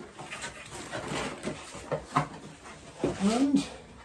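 Cardboard and plastic packaging rustling and scraping as it is handled and pulled out of a box. About three seconds in comes a short vocal sound, rising then falling in pitch.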